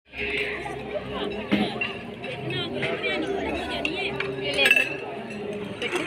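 Many people chattering over a meal, with plates and cutlery clinking now and then.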